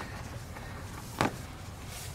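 Cardboard template being handled and shifted by hand, with one short scuff a little past a second in, over a low steady background.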